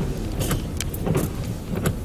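A car running: a steady low rumble with a few light clicks.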